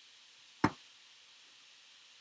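A single sharp knock about two thirds of a second in, with a brief ring, against a low steady hiss. It is handling noise from the handheld camera being moved over the acrylic-cased board.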